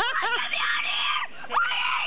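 A young boy screaming and crying in fright at a grey crowned crane that has come right up to him. There is a quick wavering cry at the start, then two long hoarse screams with a short break between them.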